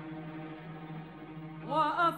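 Arabic orchestra holding a soft, steady low note in the strings. Near the end, a louder phrase comes in, rising in pitch with vibrato.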